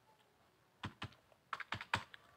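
Plastic keys of an Orpat desk calculator pressed with short clicks: two presses about a second in, then a quicker run of four near the end, as the display is cleared and the first number of a sum is keyed in.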